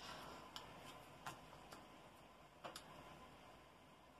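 Near silence with about four faint, sharp clicks as cards are handled and laid on a cardboard game board.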